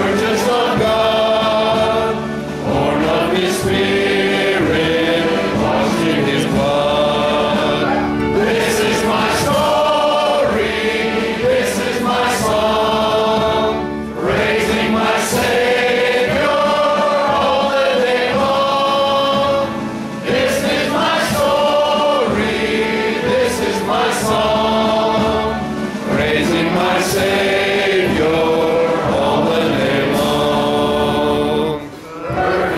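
A choir singing a gospel hymn in harmony, in held phrases of a few seconds with short breaks between them.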